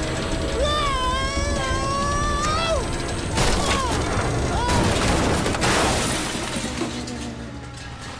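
Cartoon sound effects over background music: a long, wavering, held cry, then two crashing impacts, one about three and a half seconds in and a longer one about five seconds in, as the digger is swung about and comes down.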